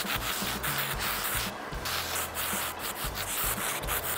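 Aerosol can of primer surfacer spraying a light coat, a steady hiss that breaks off briefly about a second and a half in before the next pass.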